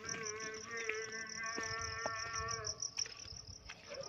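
Crickets chirping steadily in a fast, pulsing high trill. Under it, a faint held pitched sound lasts about the first two and a half seconds, with a few low bumps.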